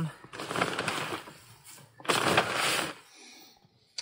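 Shredded paper rustling as it is shaken out of a brown paper bag into a plastic compost bin, in two bursts of about a second each.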